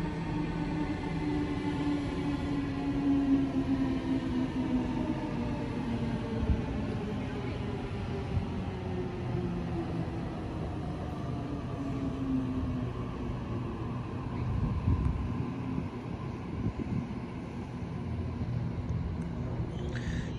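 Sydney Trains Waratah (A set) electric train arriving at the platform. Its traction motors whine in several tones that slowly fall in pitch as it brakes, over a low rumble from the wheels on the rails.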